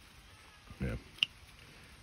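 A single short, sharp click about a second in, from a pair of bypass hand pruners being handled.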